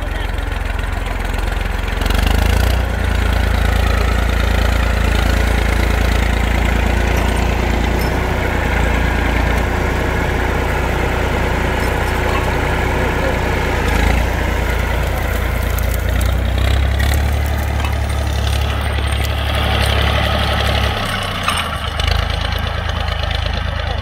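IMT 539 tractor's three-cylinder diesel engine running steadily while pulling a mouldboard plough through the soil.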